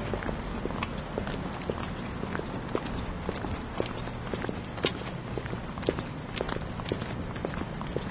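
Footsteps of two people walking on a paved sidewalk: a quick, uneven run of sharp shoe clicks, a few each second.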